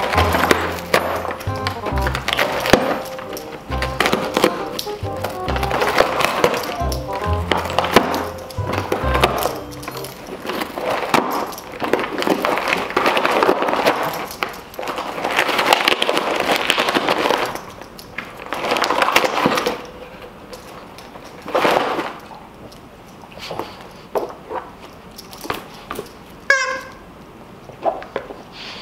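Background music with a pulsing bass line over a dog ripping and chewing at a cardboard box. The music fades after about ten seconds, leaving irregular bursts of tearing cardboard, then scattered small knocks and a brief squeak near the end.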